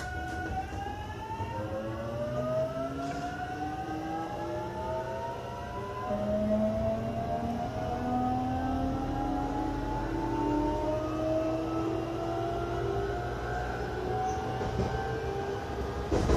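JR Kyushu 813 series electric train's inverter and traction motors whining as it accelerates away from a station. Several tones rise steadily in pitch, and a new lower set starts about six seconds in and climbs again, over a steady low rumble of the running gear, heard from inside the leading car.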